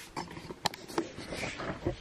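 Several light, sharp clicks and knocks over soft rustling, the sound of things being handled close to the microphone.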